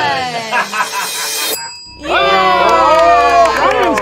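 Several people shouting and cheering at once, in long, drawn-out calls, broken by an abrupt cut a little under two seconds in.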